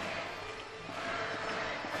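Music with faint sustained tones under a steady haze of crowd noise in a large arena.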